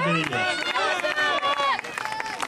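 A man's voice trails off in the first half second, then several raised voices overlap one another, calling out in high, swooping tones.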